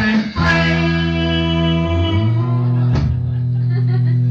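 Live band's electric guitar and bass holding the song's closing chords, letting them ring, with a fresh chord struck about three seconds in.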